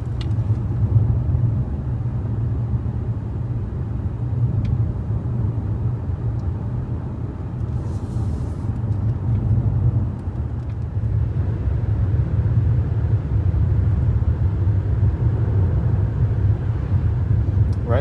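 Steady low rumble of road and tyre noise heard inside the cabin of a moving 2008 Lexus LS 460 L.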